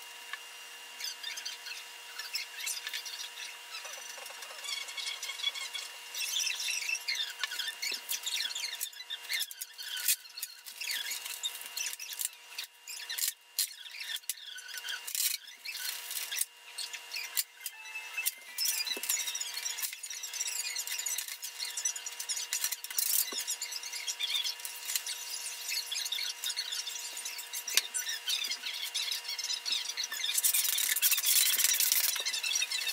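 Sock-covered covering iron rubbed and pressed over plastic covering film on a model airplane wing, with squeaky rubbing and crackling of plastic film. Sharp crackles come thickest in the middle, while a clear plastic sheet is being handled.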